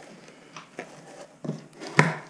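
Cardboard box flaps being handled and rubbed, with a few soft knocks and scrapes and a sharp tap at the end.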